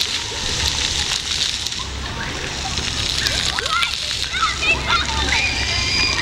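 Ground-level fountain jets spraying up and splashing steadily onto wet paving. High-pitched children's voices call out over the water, mostly in the second half.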